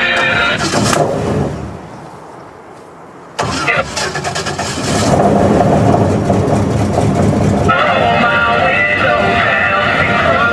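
Music from the airboat's stereo stops about a second in; after a short lull the airboat's engine cranks and fires suddenly at about three seconds in, catching on a cold start and settling into a loud, steady run. Music can be heard again over the engine near the end.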